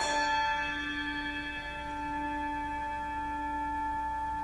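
A bell struck once, its many tones ringing on and slowly fading, over the lingering ring of an earlier strike.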